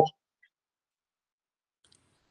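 A woman's voice ends at the very start. Then there is dead near silence between speakers on the call audio, broken only by two very faint clicks: one about half a second in and one near the end.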